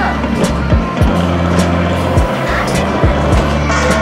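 Background music with a steady beat, deep bass and a regular kick drum.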